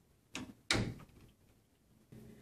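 Two sharp knocks about a third of a second apart, the second louder and dying away over about half a second.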